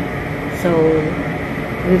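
A woman says one drawn-out word, over a steady mechanical hum with a thin, faint high whine.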